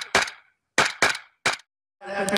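Small-arms gunshots in a firefight: five sharp shots in uneven succession, one at the very start, another just after, a quick pair about 0.8 s in and a last one about a second and a half in, each ringing out briefly.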